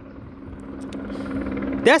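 A steady low mechanical hum that grows gradually louder; a man's voice starts near the end.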